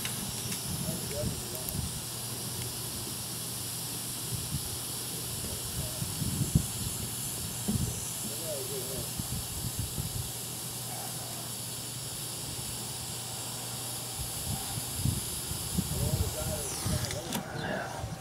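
Steady hiss with a low hum under it while a soldering iron melts solder onto a cracked joint of a PGM-FI main relay's circuit board, with a few light knocks from handling. The hiss stops near the end as the iron is lifted away.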